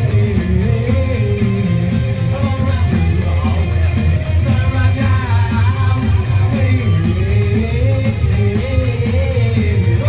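Psychobilly band playing live: sung vocals over electric guitar, with a heavy, loud low end from the bass and drums.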